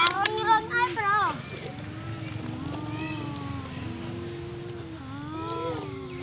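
A young child's voice vocalizing without words: quick warbling notes in the first second or so, then long drawn-out hums that slowly rise and fall in pitch, with one rising glide near the end.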